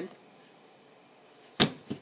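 A short, near-silent pause in a room, then a sharp knock about one and a half seconds in, followed by a second, lighter one just after.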